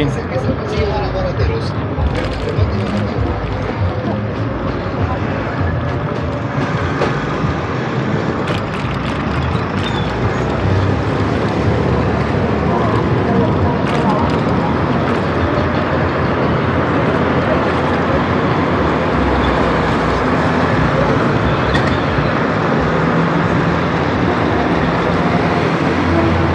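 Busy street ambience heard from a moving bicycle: steady traffic noise with voices of people along the street mixed in.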